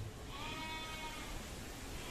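One drawn-out animal call lasting about a second and falling slightly in pitch, with a second call starting at the very end.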